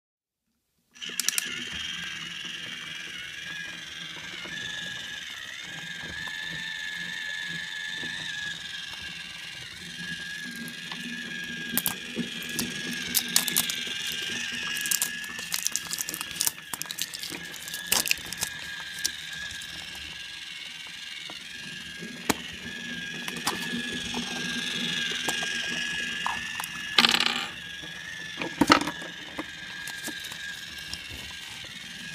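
Small toys and a plastic wrapper being handled on a table: scattered clicks and crinkling, with a louder crackle of plastic near the end, over a steady high background tone.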